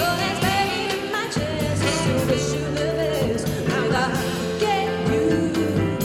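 A woman singing a pop song live into a microphone with a band behind her, her voice wavering in pitch over steady bass notes and regular drum and cymbal hits.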